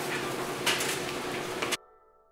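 A door being handled: a sharp knock less than a second in and another near the end, over a steady noisy hiss. The sound cuts off abruptly just before the end.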